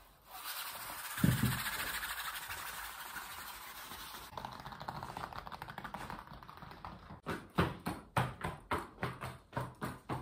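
Close handling sounds of an object: a rustling with a sharp thump about a second in, then fine crackling, then quick rhythmic tapping at about two to three taps a second over the last few seconds.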